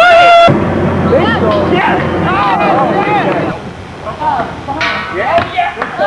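Several people shouting and calling out excitedly, with no clear words. An abrupt splice about half a second in brings in a low steady hum under the voices for about three seconds.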